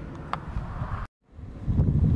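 Wind buffeting the microphone, a low rumble. It cuts out completely for a moment about a second in, then comes back.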